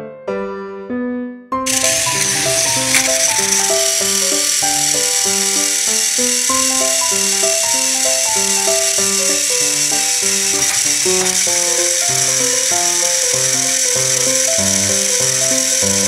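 Background piano music throughout. About a second and a half in, a loud, steady, high whirring rattle joins it: the electric motors and plastic gears of battery-powered toy train engines running flat out while they push against each other.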